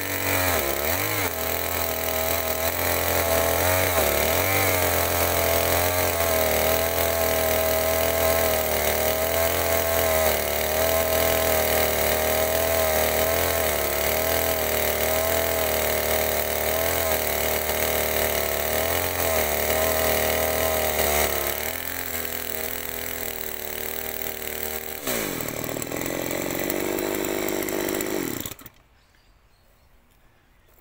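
Baumr-Ag SX72 two-stroke chainsaw cutting through a log at full throttle, its engine note steady under load; about 21 seconds in it eases off, the revs dip and rise once near 25 seconds, and the engine cuts off suddenly near the end. The saw is running with a carburettor clogged with sawdust that has got past a poor air filter, which the owner says left it in need of a tune-up.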